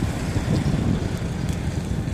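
A steady low rumble of a Segway mini self-balancing scooter rolling over asphalt, with wind buffeting the microphone as it rides.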